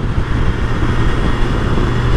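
BMW S1000XR inline-four engine running steadily at freeway cruise, mixed with loud wind and road noise on the rider-mounted microphone.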